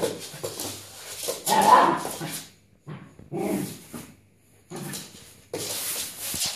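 A dog barking in several short bursts with quiet gaps between them, the loudest about two seconds in.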